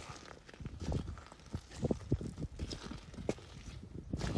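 Footsteps on a stony, pebbly shore: irregular crunches and clacks of stones shifting underfoot, about two steps a second.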